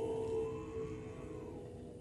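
Tibetan Buddhist monks chanting: one deep, held note that grows gradually quieter in the second half.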